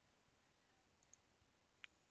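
Near silence with faint computer mouse clicks: two small ticks about a second in and a sharper single click near the end.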